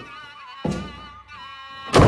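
Film score music with a held, slowly wavering melody line, broken by two dull thuds: one at the start and one just over half a second in. A louder hit lands right at the end.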